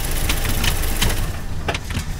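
A Jeep Patriot's engine running, with several sharp knocks over the steady low rumble.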